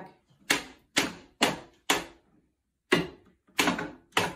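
Sharp knocks on wood, six of them spaced irregularly, as an African grey parrot bangs about in a wooden drawer during a tantrum over a toy taken from it.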